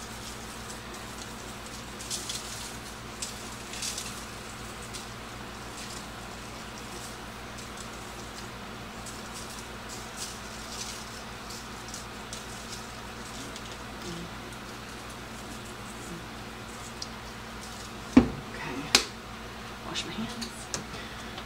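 Soft, brief shakes of a spice jar seasoning raw chicken tenders, over a steady low hum. Near the end, two sharp knocks, about a second apart, as the jar is set down on the counter.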